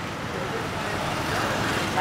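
Traffic noise under a crowd's background voices, growing a little louder.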